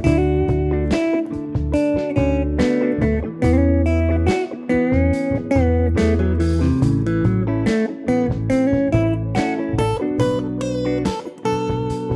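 Fender Telecaster electric guitar improvising single-note melodic lines, with some notes bent up and down in pitch, over a backing track with a low bass line.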